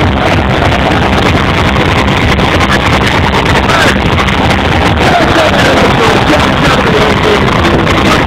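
Loud hardcore dance music from a festival sound system, picked up by an overloaded handheld microphone so that it sounds muddy and distorted.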